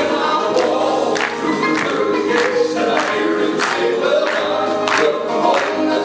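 Male gospel vocal trio singing in harmony with piano accompaniment. Hands clap along on the beat, a sharp clap about every half second or so.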